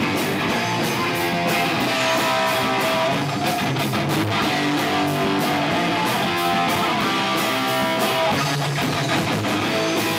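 Live recording of a punk rock band playing, with electric guitars and bass over a drum kit with steady cymbal and drum hits, in a bassy mix.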